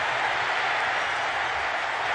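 Steady noise of a large stadium crowd reacting to a fumble recovery.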